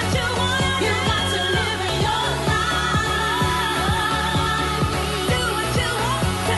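House music with a steady kick-drum beat, about two beats a second, under a sung vocal line.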